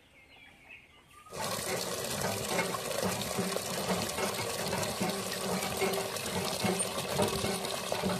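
Water from a hand pump's spout gushing into a partly filled aluminium bucket. It starts suddenly about a second in and runs steadily.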